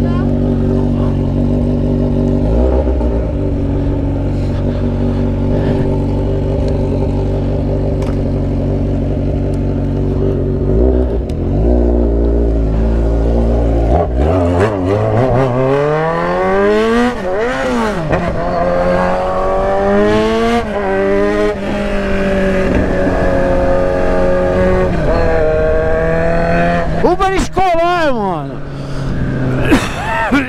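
Motorcycle engine idling steadily with two brief throttle blips, then pulling away about halfway through and accelerating up through the gears, the pitch climbing and dropping back at each shift, before easing off near the end.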